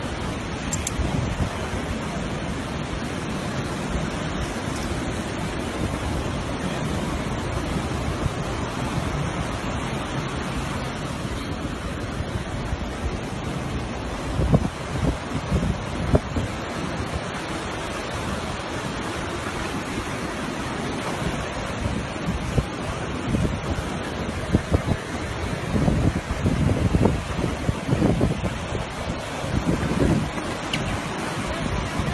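Surf breaking on a beach with wind buffeting the microphone, the buffets strongest about halfway through and again near the end.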